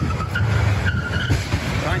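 Car tyres squealing as traffic brakes hard at a crosswalk, short high screeches in the first second or so over a steady street-traffic rumble.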